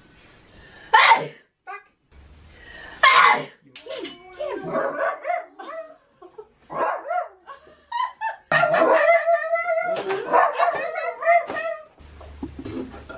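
A dachshund barking twice in the first few seconds, then a long run of wavering howls and yelps.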